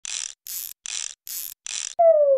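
Ratchet screwdriver sound effect: five short, even ratcheting bursts about 0.4 s apart, each about a third of a second long, as screws are backed out.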